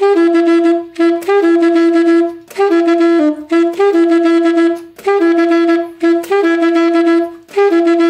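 Alto saxophone playing a swung riff in C-sharp minor: the same C-sharp (concert E) repeated in short phrases, with brief steps up to E and down to B. The phrases are separated by short breaks about once a second.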